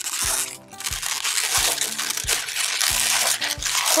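Latex 260 modelling balloon being twisted and worked by hand: a dense, crinkly rubbing of rubber against hands. Under it runs background music with a steady beat.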